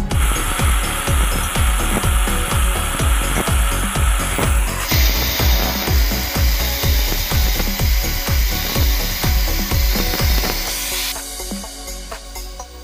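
Angle grinder with a cutting disc cutting grooves into a bamboo tube; the cutting sound changes about halfway through and stops near the end. A steady beat of background music runs underneath.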